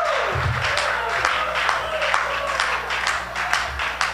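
Congregation clapping irregularly and calling out, with low sustained music notes holding underneath.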